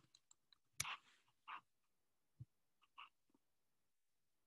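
Near silence broken by a few faint, short clicks and soft noises. The loudest is a sharp click about a second in.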